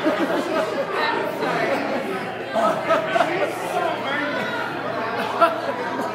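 A man laughing and saying "I'm sorry", then the steady chatter of many people talking in a large, busy room.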